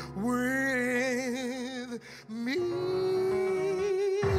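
A male soloist sings a worship song into a handheld microphone with a wide vibrato. He holds one long note, then after a brief break about two seconds in rises to a second, higher held note.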